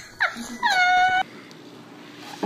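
A pet gives a couple of short squeaky calls, then one long high cry that dips in pitch at the start, holds steady for about half a second and stops abruptly a little past the first second.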